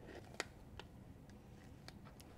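Scissors cutting small pieces from a tub of thick gelatin base: a few faint, sharp clicks of the blades, the loudest about half a second in.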